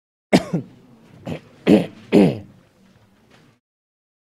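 A person coughing and clearing their throat: about five short, harsh bursts within two seconds, each dropping in pitch.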